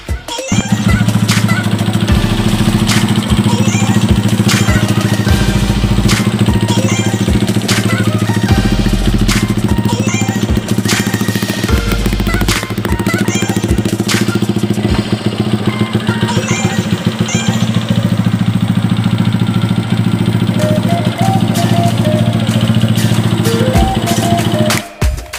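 Background music with a steady beat over a Modenas Kriss 110 cubcross's single-cylinder four-stroke engine running steadily without revving.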